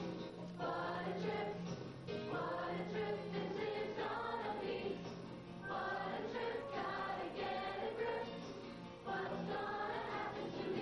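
Youth choir singing in phrases of about three seconds, with short breaks between them.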